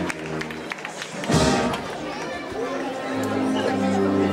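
Processional band music playing long held chords, over the chatter of a street crowd, with a brief loud rushing noise about a second and a half in.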